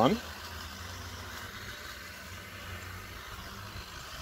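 Steady hum of a honey bee colony buzzing around an open hive while a brood frame covered in bees is held up over it.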